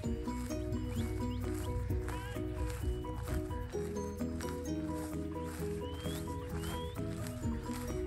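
Background music with a steady beat and a repeating melody of short notes.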